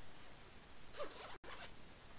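A brief zip-like rasp of something being handled at the desk, a few quick strokes about a second in, cut by a split-second break in the audio.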